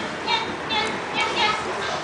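High-pitched singing from a Vocaloid song, in short, evenly repeated syllables about two to three a second.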